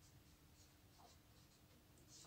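Very faint strokes of a marker pen writing on a white writing board, otherwise near silence.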